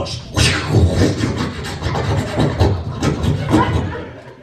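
A man making rapid vocal sound effects close into a handheld microphone: grunts, puffs of breath and mouth noises in a fast, uneven run, loud on the mic.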